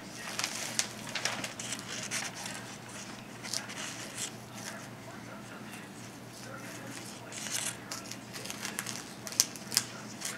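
Paper crinkling and rustling with short scrapes and tearing as a knife trims fat and silver skin off a deer hindquarter and the strips are pulled away by hand. There are a couple of sharp ticks near the end.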